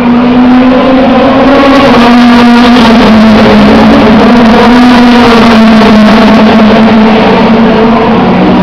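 Touring race car engine running loud and steady at high revs, its pitch dipping and rising slightly.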